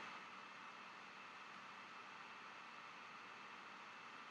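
Near silence: steady, faint room tone with a hiss.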